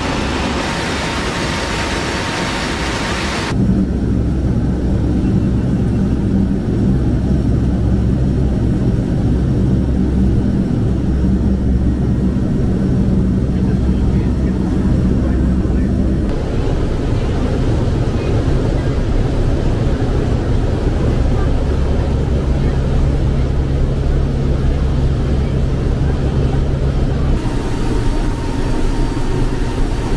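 Steady drone of a C-130H's four turboprop engines in flight. It opens as a loud rushing of wind and engine noise with the rear cargo ramp open. After a few seconds it cuts to a deeper, steady engine hum with a low tone, then switches back to the rushing noise near the end.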